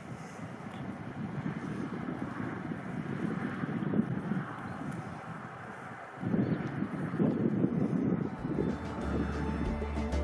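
Wind buffeting the microphone outdoors, a rough uneven rush that breaks off briefly about six seconds in. Music with a deep bass comes in near the end.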